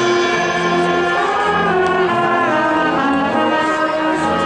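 Marching band brass playing held chords, moving to new chords partway through.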